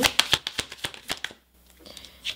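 Tarot deck being shuffled by hand: a quick run of card flicks, about ten a second, stopping about a second and a half in. Near the end a card is slid out of the deck and laid on the table.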